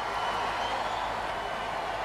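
A large crowd cheering and applauding: a steady, even wash of noise with no single voice standing out.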